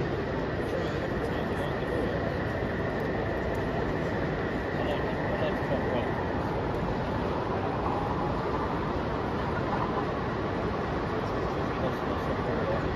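Steady hubbub of a crowded exhibition hall: many indistinct voices blended into a constant murmur.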